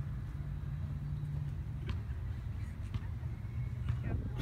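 Steady low outdoor rumble, with a few faint clicks about two and three seconds in.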